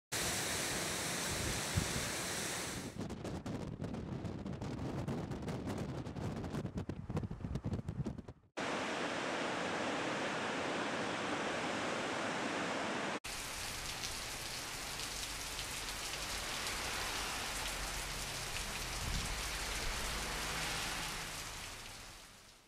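Storm-weather outdoor ambience of wind and surf, made of several edited clips: a steady rush of noise that changes abruptly about 3, 8.5 and 13 seconds in, gusty in the second part.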